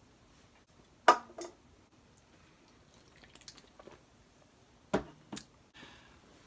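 Two short, quiet breath and mouth sounds, a sharp exhale about a second in and a lip smack near five seconds, with a few faint clicks between, in an otherwise quiet small room.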